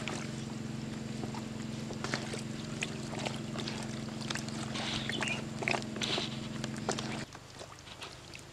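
Hands squelching and slapping through raw fish pieces in a basin of wet marinade, with many short wet clicks. A steady low hum runs underneath and cuts off suddenly about seven seconds in.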